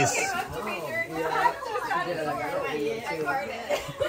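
Several people talking over one another, indistinct group chatter.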